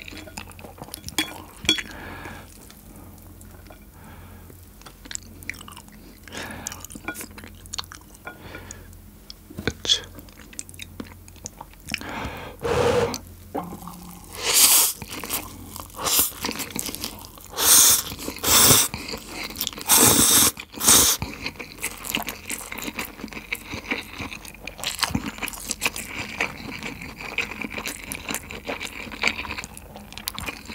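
Close-miked eating of spicy stir-fried instant noodles wrapped in thin egg-crepe strips: soft wet chewing and mouth clicks, with a run of loud slurps of the noodles about halfway through.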